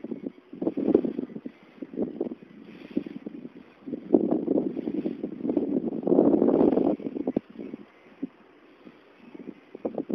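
Wind buffeting the microphone in irregular gusts while riding a bicycle, heaviest from about four to seven seconds in, then easing off.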